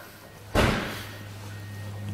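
A door slamming shut once, about half a second in, its sound dying away quickly.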